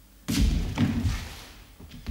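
A dancer's body landing heavily on a wooden parquet floor, with a scuffle that trails off over about a second, then a second, shorter thud near the end.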